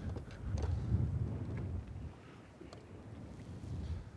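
Low, uneven rumble of wind and waves around a fishing boat rocking on open water, louder in the first two seconds and then easing off, with a few faint clicks.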